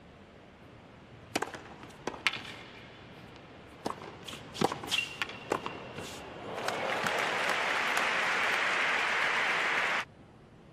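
Tennis ball struck back and forth with rackets on a hard court: a series of sharp hits and bounces. About six and a half seconds in, crowd applause sets in, and it is cut off abruptly at the end.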